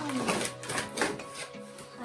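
A plastic toy kitchen set being slid up out of its cardboard box: a few sharp scrapes and rustles of cardboard and plastic, over background music.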